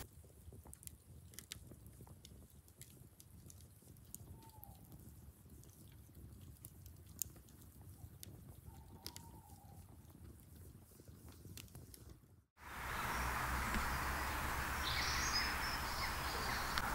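Wood fire burning in a metal fire pit, crackling with sparse sharp pops. About two-thirds of the way through it cuts to a louder, steady outdoor woodland ambience with a brief bird call.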